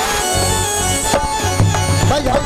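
Live Saraiki folk music between sung lines: a harmonium and a hand drum play a melodic, rhythmic instrumental passage with a gliding melody line. The drum beats come stronger in the second half.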